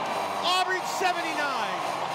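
Speech only: a basketball play-by-play announcer talking.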